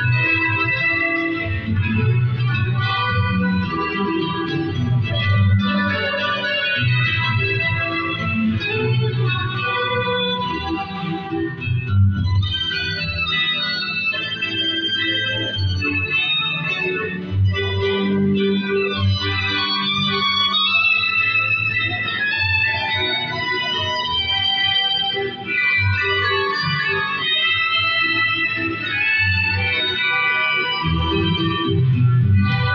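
Bolivian cueca music with an organ-like electronic keyboard carrying the melody over a pulsing bass.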